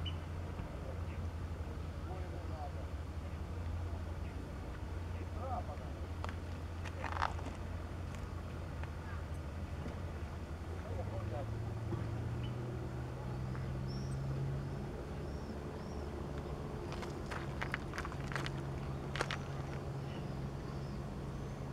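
Distant engine droning low and steady, rising in pitch about halfway through, over riverside ambience with faint voices, a few short clicks and small high bird calls near the end.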